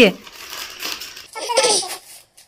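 Foil and plastic gift wrapping crinkling and rustling as it is pulled open by hand, with a brief voice near the end.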